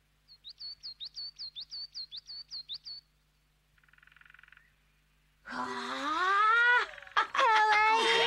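A small bird chirping rapidly, about a dozen short high chirps over three seconds, then a brief faint buzz. From about five and a half seconds, loud children's voices exclaiming.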